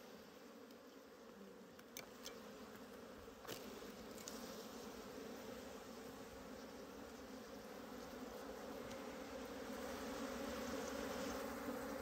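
Wild honeybees buzzing steadily around their opened ground nest as comb is pulled out, the hum slowly growing louder, with a couple of faint clicks.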